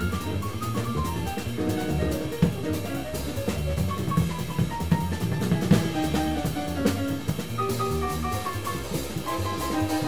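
Live jazz quartet playing: plucked upright double bass and a drum kit, with higher melodic lines moving over them.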